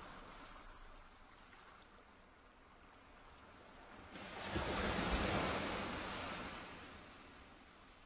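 Wind buffeting the camera microphone outdoors: a faint hiss, then a gust of rushing noise with low rumble about four seconds in that swells and dies away near the end.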